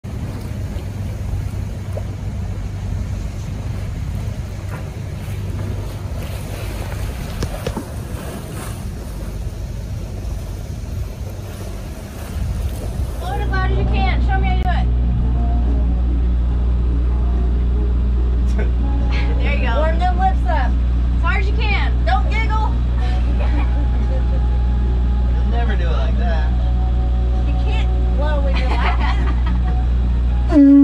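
Wind and water rushing across the microphone, then a sudden change about 13 seconds in to a sailboat's inboard engine droning steadily, heard from the cockpit with people talking over it.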